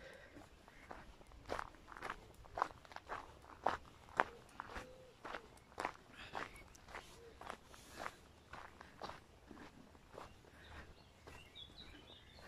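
Walking footsteps on a gravel and dirt footpath, about two steps a second, quiet and even, a little louder in the first half.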